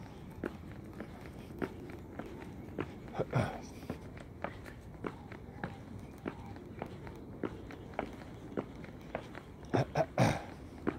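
Footsteps on a concrete sidewalk at an even walking pace, a little under two steps a second, over faint steady background noise, with one louder brief sound about three and a half seconds in.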